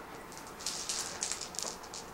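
Plastic gaming dice rattling together in a series of about five short, faint shakes, as the next order die is drawn in a Bolt Action game.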